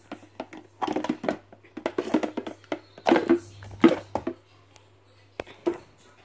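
Plastic clicks and knocks as a Tommee Tippee Perfect Prep replacement filter cartridge is handled and pushed into its holder in the water tank, a cluster of them in the first four seconds and a few more near the end, over a steady low hum.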